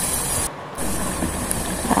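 Pot of water with sliced melinjo skins at a full boil, a steady bubbling hiss that drops out briefly about half a second in.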